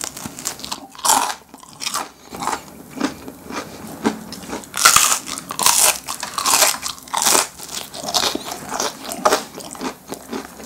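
Close-miked biting and crunchy chewing of a crisp fish-shaped pastry (bungeoppang-style), with sharp crunches about once a second. The heaviest crunches come around five to seven seconds in.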